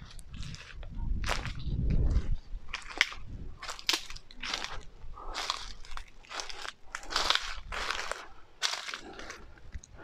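Footsteps crunching on dry fallen leaves and twigs, a steady walking pace of about one or two steps a second. A low rumble comes in for a moment about a second in.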